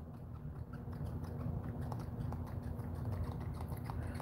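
Faint small clicks and handling rustles of a plastic pump bottle of jelly face primer being worked by hand, over a low steady hum.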